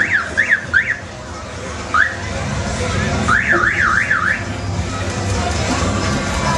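Electronic toy siren on a children's carousel car, sounding in short bursts of fast whooping rises and falls in pitch: three at the start, one short rise about two seconds in, and four more a little past the middle, over a low steady rumble.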